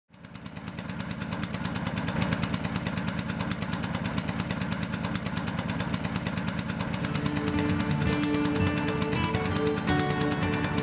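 A boat's engine running with a fast, even chugging beat, fading in at the start. Music with sustained notes joins it about seven seconds in.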